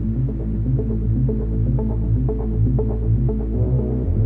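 A steady, low electronic drone with a throbbing pulse. Short higher tones flicker over it in the middle, and the bottom tone drops lower near the end.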